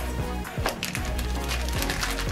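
Scattered light plastic clicks and crinkles as small plastic toy pieces and a clear plastic accessory bag are handled, over soft background music.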